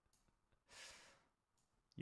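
Near silence, with one faint breath from a man, a short noisy intake, about a second in.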